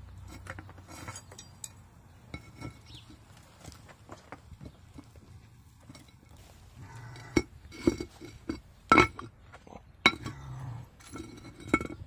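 Metal clinking and knocking as a steel ingot mold and casting tools are handled, with scattered light clicks and then several sharp strikes that each ring briefly. This fits the mold being knocked to turn out the freshly cast aluminum bronze ingot.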